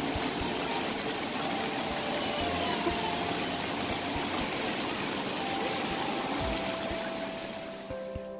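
Steady rush of water running down a water-park slide and into a shallow splash pool, with music coming in faintly near the end.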